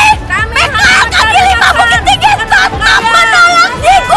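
A woman shouting loudly in a high, strained voice, with crowd babble behind her.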